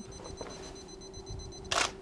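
A single-lens reflex camera's shutter firing once near the end, a short sharp click, over a faint steady hum.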